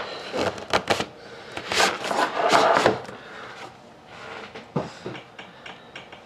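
Hands handling a hockey card box: a few clicks and knocks, then about a second of sliding, scraping rustle as the box is opened out, followed by a few light taps.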